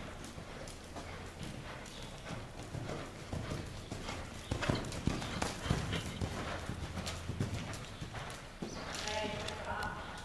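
Thoroughbred gelding's hoofbeats at a canter on soft sand arena footing, a steady rhythm of dull thuds that grows loudest around the middle as the horse passes close.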